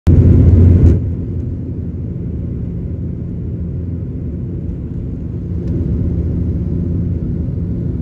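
Steady low rumble of a passenger jet's engines heard inside the cabin as it taxis, after a loud rushing noise in the first second.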